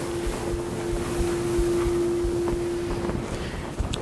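Steady background noise with a single held tone underneath that fades out about three seconds in.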